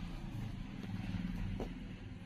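A low, steady motor hum, with a few faint clicks.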